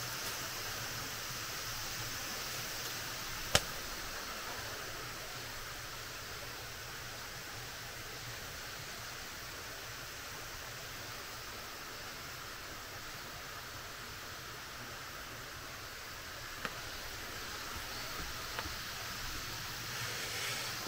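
Steady outdoor background hiss in a wooded setting, with one sharp click a few seconds in and a fainter click later on.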